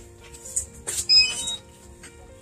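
A click, then a quick run of short electronic beeps at several different pitches about a second in, from the DJI Mini 2 drone system being powered up for pairing with its controller.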